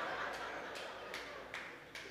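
Congregation murmuring and chuckling in a large hall, with five sharp, evenly spaced hand claps about two and a half a second.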